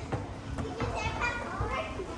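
Children playing in the background: a mix of distant children's voices and calls, with a few higher-pitched calls in the second half.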